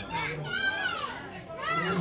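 Children's voices calling out and chattering in high voices that glide up and down, over a low steady hum.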